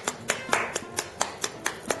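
Hands clapping in a steady rhythm, about four or five claps a second: applause on cue.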